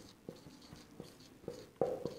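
Marker pen writing on a whiteboard: about five short strokes in two seconds, each with a brief squeak.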